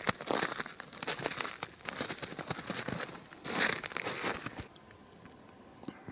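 Footsteps crunching through snow on a track, an irregular crackling with a louder crunch about three and a half seconds in, stopping about five seconds in.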